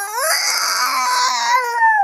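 A sick one-year-old toddler crying through a dummy: one long wail that rises sharply at the start, is held, then slowly sinks. Her cry is of the kind her mother hears as pain rather than her usual grizzling.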